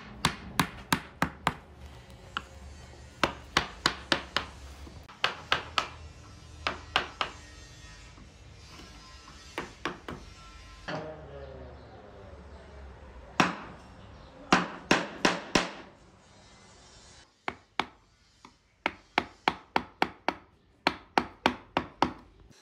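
Wooden mallet striking a steel carving chisel into a hardwood panel, in runs of sharp knocks, about three to four a second, with short pauses between the runs.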